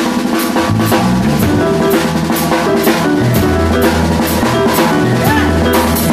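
Live band playing: an acoustic drum kit keeps a steady beat on snare, bass drum and cymbals under sustained notes from an amplified guitar.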